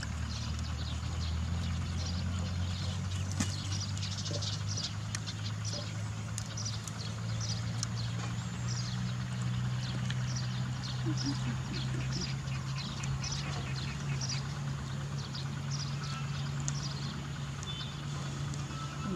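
Outdoor ambience: a steady low drone like a distant engine, under many short high-pitched chirps scattered throughout.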